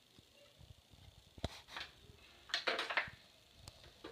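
Quiet handling noises: a sharp click about a second and a half in, a short rustle around three seconds, and a faint tick near the end.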